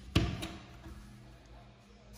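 A sharp knock with a short ringing tail, then a lighter click just after, from the bathroom window being handled, with a low steady hum underneath.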